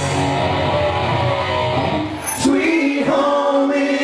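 Live rock band playing with singing, bass guitar and drums. About two and a half seconds in, the bass and drums drop out, leaving a held note ringing.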